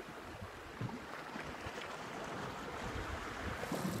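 Sea washing against a rocky shore, a soft steady surf with some wind on the microphone.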